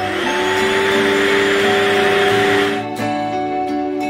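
Fakir Starky WDA 700 cordless wet-and-dry vacuum running. Its motor pitch rises as it starts, and it cuts off after a little under three seconds, over soft background music.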